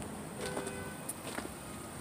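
Faint outdoor background noise with a few soft ticks, and a brief faint tone about half a second in.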